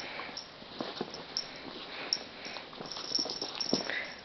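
A dachshund moving about and playing with a sock toy on carpet: faint, scattered light ticks and soft rustles.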